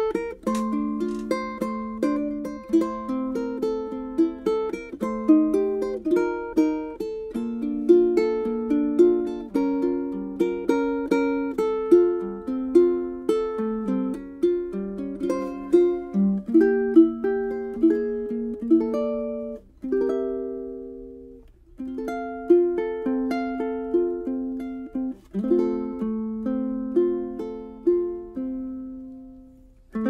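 Solo ukulele with a rosewood saddle, fingerpicked in a melodic piece mixing single notes and chords, with two short breaks about two-thirds of the way through. The rosewood saddle gives it a warmer, lo-fi tone with less attack and less of the high frequencies.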